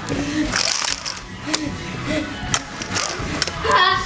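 A child's voice calling out 'egg' in a sing-song way, amid frequent sharp clicks and knocks.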